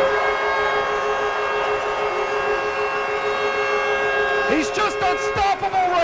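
Arena goal horn sounding a steady two-note chord over a cheering crowd, marking a home-team goal. The horn's higher note cuts off about five seconds in, leaving the lower note sounding.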